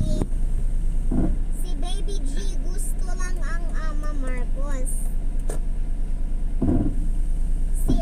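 Car engine idling, heard inside the cabin: a steady low hum with a regular pulse. Two dull thumps, one about a second in and one near the end.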